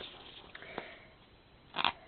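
A single quick sniff near the end, the loudest sound, after a quiet stretch with a couple of faint taps as paper, card and tape are handled.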